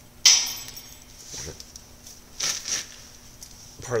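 A small metal lock-picking tool dropping with a sharp clink about a quarter second in, followed by a few softer handling noises.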